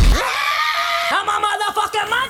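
A bass-heavy backing track drops out, and a high solo voice holds one long note for about a second, then sings short gliding phrases that rise and fall.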